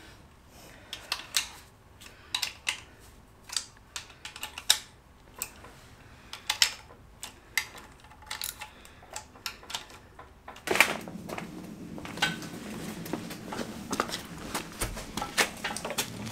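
Irregular metallic clicks and taps of a hand ratchet and tools on the aluminium front of a BMW M62 V8 engine as its bolts are snugged down lightly. About two-thirds of the way in, a steadier noise sets in under the clicks.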